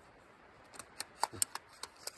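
Several light metallic clicks of an Arsenal SM13 side-rail optic mount being seated on the rifle's side rail and its stamped-steel lever clamped down. The clicks start a little under a second in, and the loudest comes near the middle.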